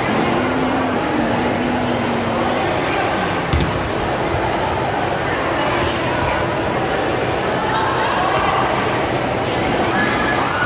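Steady hubbub of voices from spectators and players in a school gymnasium, with one thump about three and a half seconds in.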